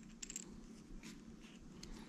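A few faint, scattered clicks from a hex key turning a screw in an M-LOK adapter rail section.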